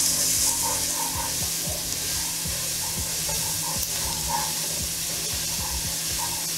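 Diced onions and bell peppers sizzling in vegetable oil in a ceramic-coated pot, with a wooden spoon stirring and scraping through them in scattered soft knocks.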